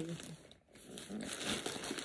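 Plastic mailing bag crinkling and rustling as a box is pulled out of it, building up again after a brief near-silent dip about half a second in.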